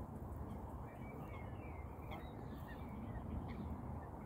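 Faint bird calls: a few short, high chirps between about one and two and a half seconds in, over a low steady outdoor rumble.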